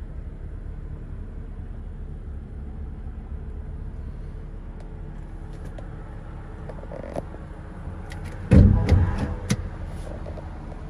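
Steady low rumble in the cabin of a BMW M2. About eight and a half seconds in comes a sudden loud thump followed by a quick cluster of sharp clicks lasting about a second.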